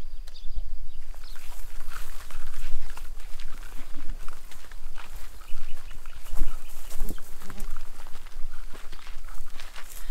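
Footsteps and rustling through long grass and garden plants: irregular swishes and crunches, with a steady low rumble of wind on the microphone.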